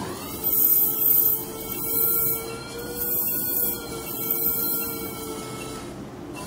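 Phacoemulsification machine's feedback tone: a steady electronic tone that glides up at the start and then wavers slowly in pitch, with a pulsing high hiss. It sounds while ultrasound energy is used to sculpt a trench in the cataract nucleus.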